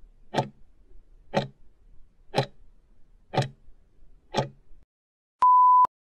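Countdown timer sound effect: five clock ticks, one a second, then a single short steady beep, the loudest sound, as the countdown reaches zero.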